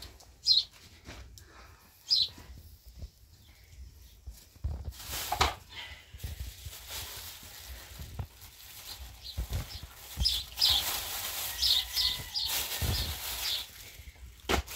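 A plastic bag of bread and a cloth rustling and crinkling as they are handled, the crinkling loudest in the last few seconds. A few short, high bird chirps sound now and then.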